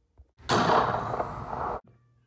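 A sudden burst of rushing noise, starting about half a second in, easing slightly and cut off abruptly near the end: an edited-in blast sound effect.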